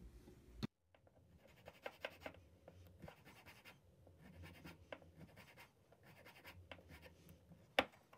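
Light scratching and small clicks as a small flat metal file is worked against a tiny wooden block, with one sharper click near the end.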